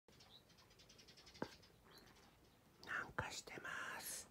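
A person whispering softly, breathy and without voice, mostly in the second half, with a single sharp click about one and a half seconds in.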